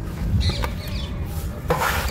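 Hands crushing and rubbing dry, dusty crumbles in a plastic tub: a soft gritty crunching and rustle. There is a denser burst of crumbling about half a second in and another near the end.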